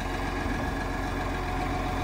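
Tractor diesel engine idling steadily, a constant low hum with no change in revs.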